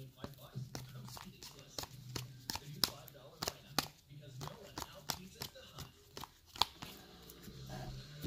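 Trading cards in clear plastic holders clicking and clacking against each other as a stack is flipped through by hand, an irregular sharp click every fraction of a second.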